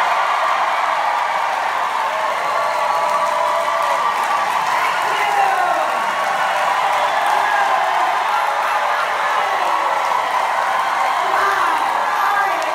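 A large crowd cheering and applauding steadily, with individual voices shouting over the din.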